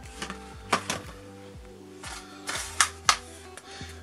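Plastic blister packaging being handled: a handful of sharp clicks and crackles, clustered about a second in and again near three seconds, over soft background music.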